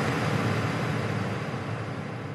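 A dense, steady wash of noise closing a TV advert's soundtrack, slowly fading.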